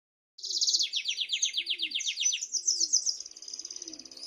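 Domestic canary singing a long, fast song of rapid trills, starting just under half a second in. It opens with a run of quick, evenly repeated notes, then shifts to a higher, quicker trill.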